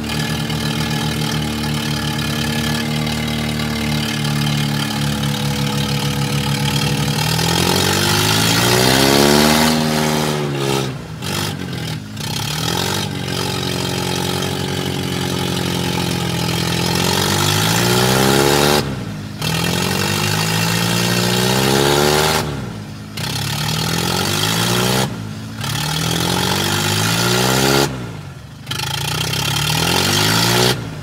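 Mahindra 575 tractor's four-cylinder diesel engine, running steadily for the first several seconds and then revved up and eased off again and again, the level dropping suddenly several times between revs.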